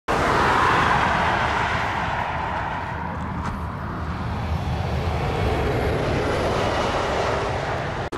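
Outdoor rumble of wind buffeting the microphone over passing highway traffic. The traffic hiss is loudest about the first second and eases off.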